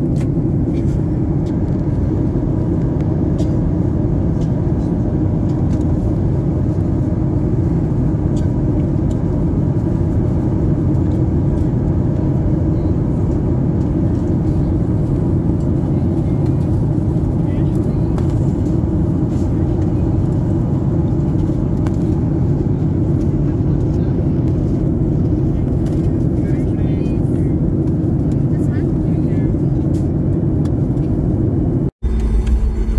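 Steady cabin noise of a Boeing 737-8 in flight, heard from a window seat: a constant low drone of its CFM LEAP-1B engines and the airflow past the fuselage.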